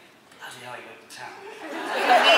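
A man speaking and chuckling, fairly faint. Near the end a much louder wash of crowd noise swells up.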